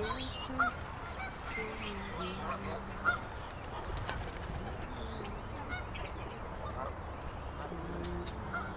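Geese honking: several drawn-out calls, one at the start, another about two seconds in, and more near the end. Short high chirps from other birds sound over a low steady rumble.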